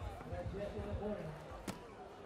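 A basketball bouncing on an outdoor court, with one sharp smack near the end, under voices talking in the background.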